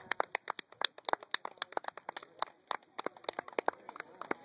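A rapid, irregular series of sharp clicks and crackles, several a second.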